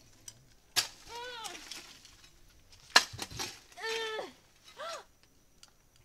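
A hoe striking hard ground twice, about a second in and again about three seconds in; the second blow is the louder. Short, high, strained cries from the person digging come between and after the blows.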